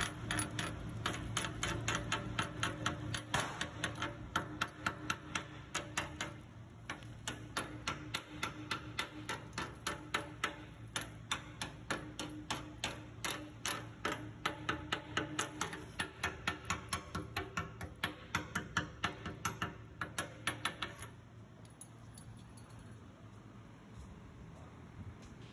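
Steel chipping hammer tapping slag off 7018 stick-weld beads on a skid steer bucket: quick light metallic strikes, about four or five a second, in runs with short pauses. The tapping stops about three seconds before the end.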